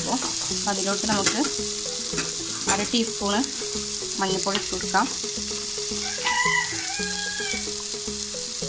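Chopped onions, tomatoes and green chillies sizzling in oil in a nonstick pan, with a spatula stirring and scraping through them.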